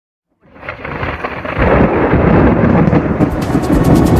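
Thunder rumbling through heavy rain. It rises out of silence about half a second in, is loud from about a second and a half, and crackles sharply near the end.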